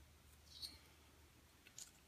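Near silence over a faint low hum, with a few faint clicks from a small pencil sharpener working on a cosmetic eyebrow pencil: one about half a second in and a short cluster near the end.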